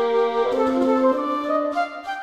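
Chamber trio of flute, violin and bassoon playing slow, sustained notes in G minor; the held chord shifts to new notes about halfway through and thins out toward the end.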